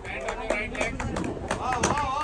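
Voices talking and calling out, untranscribed, over a low rumble of wind on the microphone, with scattered sharp clicks.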